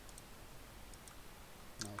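A few faint, scattered computer mouse clicks as objects are selected in the software; a man's voice starts near the end.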